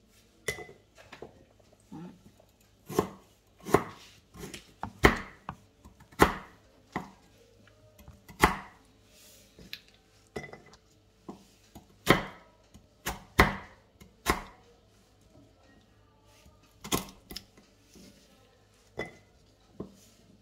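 A cleaver chopping through hard galangal root on a wooden cutting board: single sharp knocks at an uneven pace, roughly one a second.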